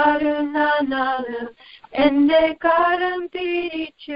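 A woman singing a Malayalam devotional song unaccompanied, in held notes with a short pause about halfway through, heard over a telephone line.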